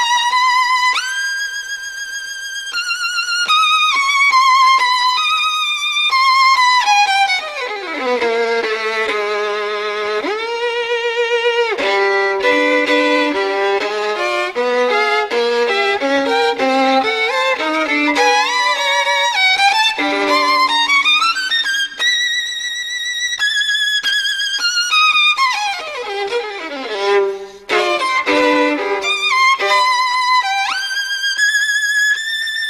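Solo violin playing slow held notes with vibrato, sliding down into its low register about eight seconds in and again near the end, with a quicker run of short notes in between.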